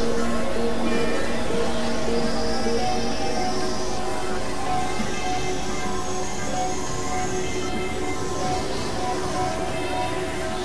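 Experimental electronic drone music from synthesizers: layered sustained tones with hissing noise sweeps rising and falling high above them. A low held tone drops out about three seconds in, and the whole slowly gets quieter.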